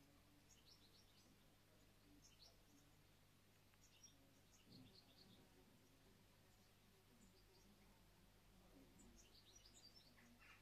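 Faint garden birdsong: short, high chirps in small clusters, a little under a second in, after about four seconds and again near the end, over a very quiet outdoor background.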